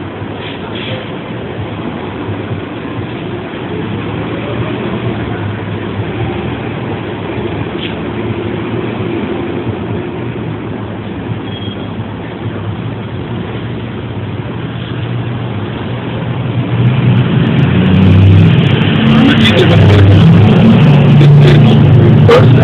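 Steady road-traffic hum with a heavy vehicle's engine running close by. The engine grows much louder over the last five seconds.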